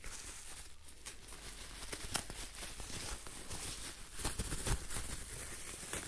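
Red plastic bubble-wrap pouch and bagged parts being handled, rustling and crinkling with scattered small crackles.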